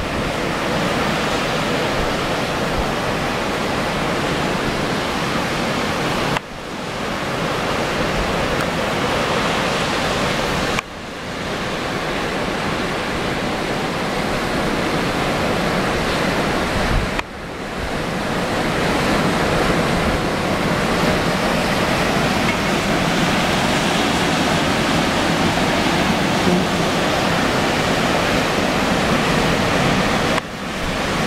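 Strong onshore wind rushing across the microphone over the steady wash of ocean surf breaking on the beach. The level drops suddenly three times and builds back up each time.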